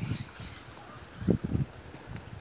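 A person's voice briefly, about a second and a half in, over a low rumble of wind on the microphone.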